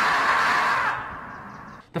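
The 'screaming marmot' meme scream: one long, loud, raspy 'Aaah!' that holds for about a second, then fades away and breaks off near the end.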